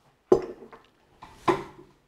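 Two sharp knocks about a second apart, each with a short ring: handling noise as a hand reaches for and touches the camera gear.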